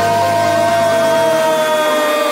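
A Brazilian TV football commentator's long, drawn-out "Gol!" shout, held on one note that slides slowly lower in pitch, over background music.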